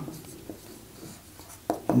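Marker pen writing on a whiteboard: faint short strokes and scratches as a word is written. Near the end a man's voice starts a syllable.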